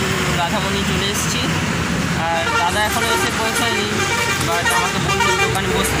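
Roadside traffic at a busy junction: the steady noise of passing motor vehicles with short horn toots, and people's voices in the background from about two seconds in.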